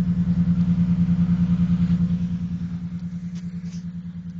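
2002 Chrysler Concorde V6 idling with a fast, even pulsing beat. The idle runs a bit high and inconsistent, which the owner puts down to a major vacuum leak from his earlier disassembly. It gets somewhat quieter about two and a half seconds in.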